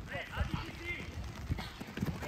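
Several voices shouting and calling over a youth football game, with the irregular thuds of players' feet running on artificial turf.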